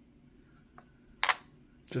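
A single sharp click about a second in as a SoundPeats GoFree2 earbud snaps magnetically into its charging case, after a faint tick.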